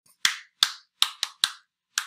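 A man clapping his hands a few times, about six sharp separate claps at an uneven pace.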